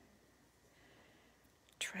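Near silence with faint room tone, then a woman starts speaking near the end.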